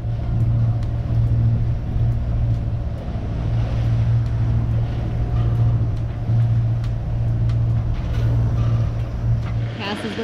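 A steady low engine drone aboard a sailing yacht underway, with water rushing past the hull.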